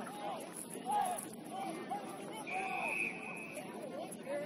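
Scattered shouts and calls from rugby players and sideline spectators on an outdoor pitch. A single steady whistle blast, about a second long, sounds a little past the middle.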